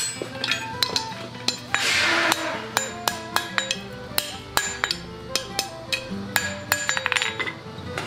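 Hand hammer striking hot bar stock and a steel anvil in a run of sharp, unevenly spaced metallic clinks with ringing, over background music. A short rushing noise about two seconds in.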